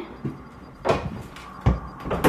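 Two short clunks, just under a second apart, as the closet doors over the laundry machines are pulled open.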